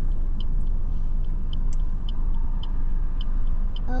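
Steady low rumble inside a car's cabin while the car sits stopped and idling in traffic, with a faint, regular ticking about three times a second.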